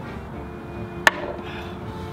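A single sharp knock about a second in, over faint lingering music.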